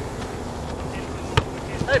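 Outdoor field background noise, with a single sharp thud about one and a half seconds in from a soccer ball being struck in play.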